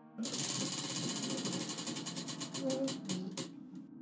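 Prize wheel spinning, its pointer clicking against the pegs: a rapid run of ticks that slows steadily until the wheel stops a little before the end.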